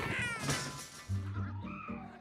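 A raccoon screeching, one cry falling in pitch and fading within the first half second, over film music; about a second in, low held notes take over.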